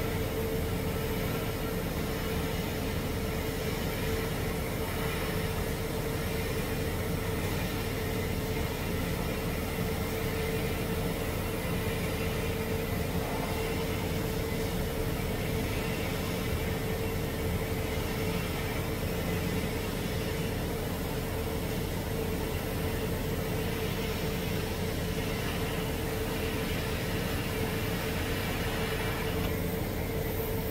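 Steady hiss and hum of a TIG welding arc running on a 2-inch pipe test coupon, with a constant mid-pitched drone underneath. The sound shifts slightly just before the end as the arc is broken.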